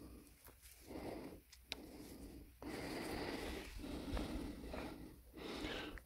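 Faint rustling and handling noise as a small fish is picked up off the grass by hand, with a few soft clicks and a longer stretch of hiss from about halfway in.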